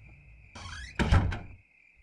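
A door sound effect: a short sliding or creaking sound, then a heavy thud about a second in as it shuts.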